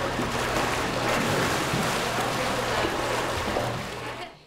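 Pool water splashing and churning around a manatee as it is lowered in a sling, a steady rushing noise with a low hum beneath it.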